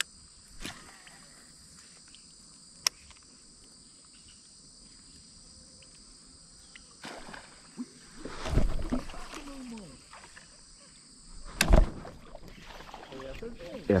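Steady high insect chirring over a calm pond, broken by a sharp click about three seconds in, then knocking and water sloshing against a plastic kayak hull from about halfway, with a loud thump near the end.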